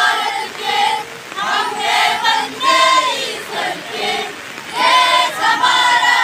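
A group of schoolgirls singing a patriotic song together as a choir, in phrases of a second or two.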